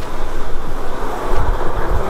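A 2009 Subaru WRX's turbocharged flat-four engine running, heard under a loud, steady rushing noise with a deep low rumble.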